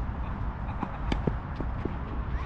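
Tennis ball being struck by rackets and bouncing during a doubles rally: several sharp knocks, the loudest about a second in.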